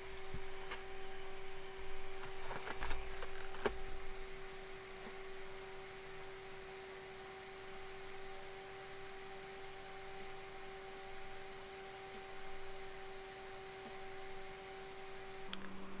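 Quiet room tone: a steady low hum over faint hiss, with a few small clicks and rustles in the first few seconds.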